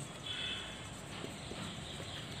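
Marker pen writing on a whiteboard: a brief faint high squeak early on, then a few light taps of the tip, over a steady background hiss.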